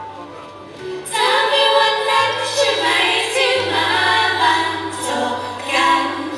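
A female idol group singing together over backing music. The first second is quieter, then the voices come in loud about a second in and carry on over a steady bass line.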